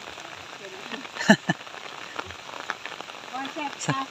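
Steady rain falling, an even hiss, with a short sharp sound about a second in and faint voices near the end.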